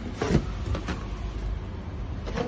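Cardboard packaging being handled: a couple of short knocks and rustles over a steady low rumble.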